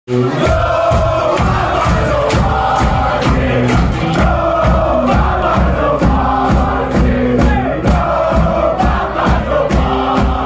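A rock band playing live, drums keeping a steady beat under bass and guitar, with a packed crowd singing and chanting along.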